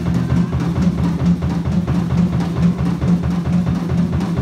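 Live funk band playing a steady groove, with drum kit and electric bass to the fore.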